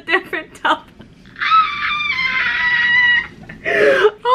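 A young woman's long, high-pitched scream of excitement at pulling a photocard she wanted, held for nearly two seconds with its pitch sinking slightly, after a few short gasps.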